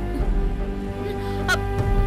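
Dramatic TV-serial background score: a sustained, horn-like chord held steady, with a short sharp swish about one and a half seconds in.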